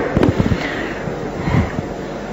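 A few low thumps and crackles over a steady hiss: handling noise on a handheld microphone.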